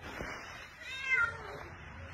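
A domestic cat meowing once, a short call that rises and falls in pitch, about a second in.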